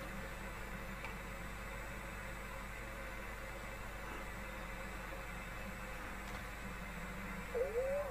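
Steady electrical mains hum with a faint hiss, the background noise of a home recording setup, with no other sound until a wavering voice-like sound begins near the end.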